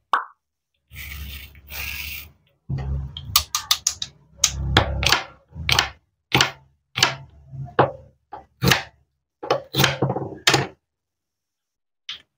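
Toy cutting-play food being handled and cut: a short rasping stretch about a second in, then a run of sharp plastic and wooden clacks and knocks as the wooden toy knife presses through a plastic toy pineapple on a wooden board and the slices, joined by hook-and-loop pads, come apart.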